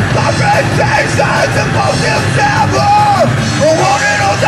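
Live hard-rock band playing: distorted electric guitars, bass and a drum kit keeping a steady beat, with a shouted vocal over the top.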